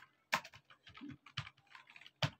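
Computer keyboard being typed at a slow, unhurried pace: about six separate keystrokes in two seconds, each a short click.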